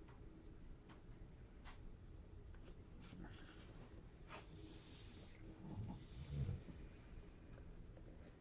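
Faint handling noises from a brush and a cardboard lid against a plastic enclosure: scattered light clicks, a brief rustle or breath-like hiss about five seconds in, and a couple of low thuds around six seconds in.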